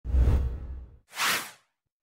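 Edited intro sound effects: a deep boom that fades away over about a second, followed by a short whoosh, then a moment of silence.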